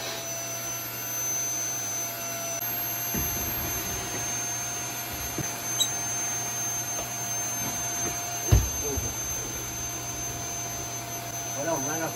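Canister vacuum cleaner switched on and running steadily with a whining hum. A few knocks of the hose or nozzle are heard over it, the loudest about eight and a half seconds in.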